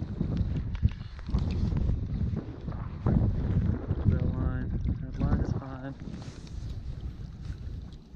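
Wind buffeting the microphone with a steady low rumble. A man's voice is heard briefly a few times around the middle.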